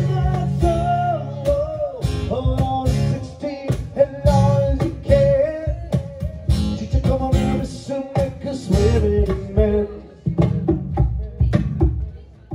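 Acoustic guitar strumming rhythmic chords during an instrumental stretch of a live pop-rock song, with a wavering melody line held over the strumming.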